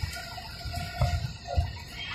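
Ride noise inside a moving Ashok Leyland Viking bus: a steady low rumble with two heavier knocks, about a second and a second and a half in, and faint short squeaks.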